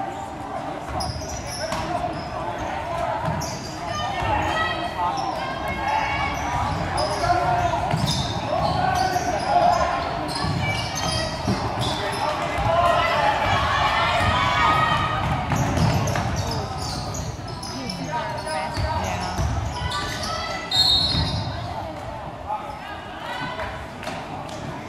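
Crowd in an echoing school gym talking and calling out during a basketball game, with the basketball bouncing on the hardwood court. The crowd noise swells in the middle of the stretch.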